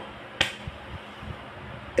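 A single sharp click about half a second in, followed by a few faint soft knocks over a low room hiss.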